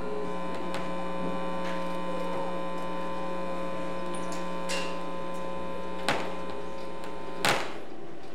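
Steady electrical mains hum, several pitches held together, with a sharp click about six seconds in; the hum cuts off with a thump near the end.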